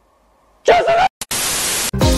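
Brief pitched cry, then a burst of static hiss lasting about half a second that starts and stops abruptly.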